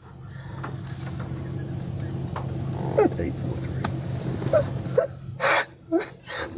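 A man whimpering and sobbing in short, broken cries, with a loud sharp breath near the end, over a steady low hum inside the patrol car.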